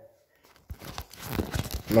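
Crackling, rustling handling noise right at the phone's microphone, starting about three-quarters of a second in, as a hand rubs over the phone.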